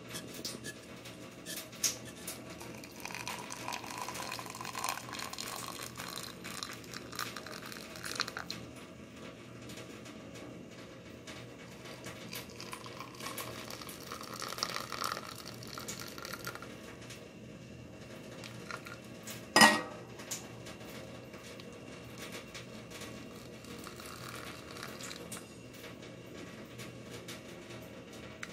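Just-boiled water poured into a glass tumbler over dried butterfly pea flowers, in two spells. One sharp knock about twenty seconds in.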